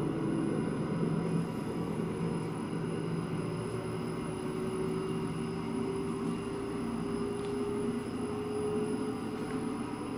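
Rousselet Robatel DRC 50 vertical-axis decanter centrifuge, belt-driven by an inverter-fed explosion-proof electric motor, spinning up on a slow drive ramp toward about 700 RPM: a steady machine hum with a whine that rises slowly in pitch.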